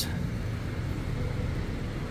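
Steady low rumble of street traffic, with no distinct passing vehicle or other event standing out.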